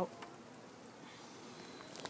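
Faint, steady buzzing of honeybees.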